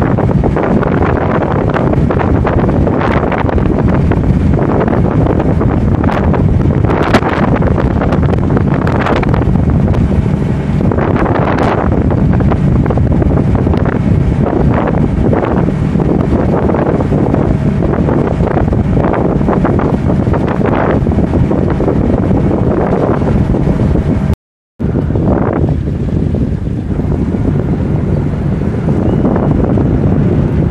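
Heavy wind buffeting the microphone aboard a moving boat, over a low steady engine drone and the rush of its churning wake. The sound cuts out briefly about 25 seconds in.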